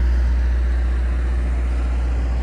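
Steady low engine hum of a parked hot chocolate and popcorn truck running at idle, easing a little toward the end.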